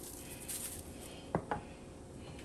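Salt shaken from a shaker over a raw turkey: a short, high hiss of shaking about half a second in, then two sharp knocks close together about a second and a half in.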